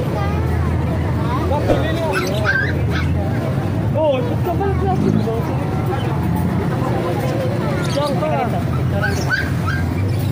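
Young puppies whimpering and yipping, short high cries that come again and again, over background voices and a steady low hum.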